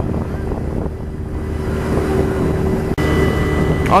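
A boat's engine running steadily under a haze of wind and water noise, with a sudden brief drop in the sound about three seconds in.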